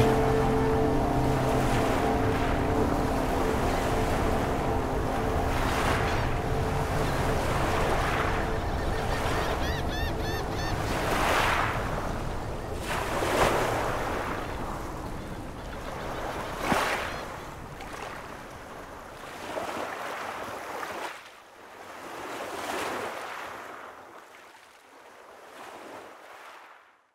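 Water washing against a concrete edge in swells every two or three seconds, slowly fading out. A held chord of background music dies away in the first few seconds.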